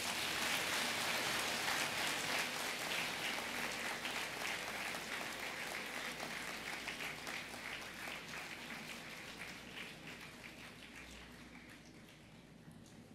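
Large audience applauding, the clapping slowly fading away.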